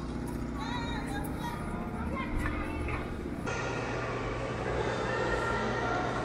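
Indistinct voices over a steady background hum. A few seconds in, the sound cuts abruptly to the steadier hum of a large indoor hall, with faint voices in it.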